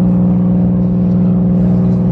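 Boat engine running at a steady, unchanging pitch: a loud, low drone.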